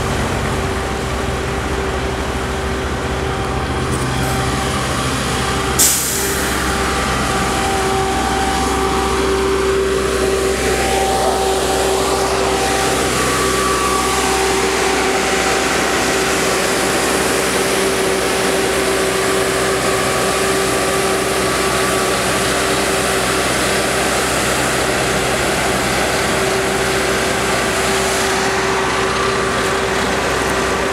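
Heavy road-paving machinery running steadily: an asphalt paver's diesel engine and a dump truck working at close range, with a constant whine over the engine noise. A short sharp hiss cuts in about six seconds in.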